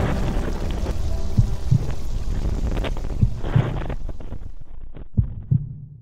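Low rushing rumble of an avalanche of snow heard through a helmet camera, fading away over the last couple of seconds. Over it, a slow heartbeat sound effect beats three double thumps about two seconds apart.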